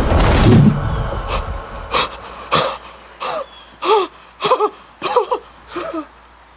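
A dense rush of noise in the first second, then short, voiced panting breaths about every half second after a sudden lunge.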